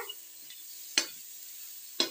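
Onion-tomato masala sizzling faintly in a steel kadhai while a steel ladle stirs it, with one sharp scrape-click of the ladle against the pan about a second in.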